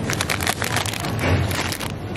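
Crisp packets crinkling as they are handled, a dense, irregular run of crackles.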